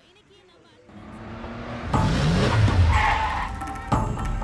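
An SUV arriving fast, its sound building from about a second in, with a rising engine note, then tyres skidding as it brakes to a stop.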